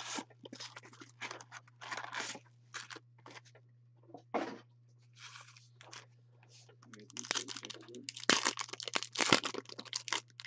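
A cardboard trading-card blaster box being opened and a plastic-wrapped card pack pulled out and torn open: irregular crinkling and tearing, busiest and loudest in the last three seconds, with two sharp snaps near the end. A steady low hum runs underneath.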